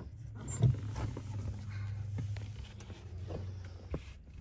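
Bare foot pressing a floor pedal in a stripped 1991 Dodge Stealth: a dull thump about half a second in, then a few light clicks. A steady low hum runs underneath.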